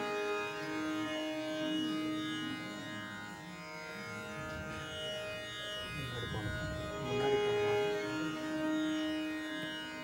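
Steady tanpura drone for a Carnatic recital, with long, soft held notes sounding over it that fade in and out, and a brief low rumble about six seconds in.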